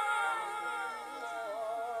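Quiet unaccompanied voice chanting a wavering melodic line in the style of Quran recitation.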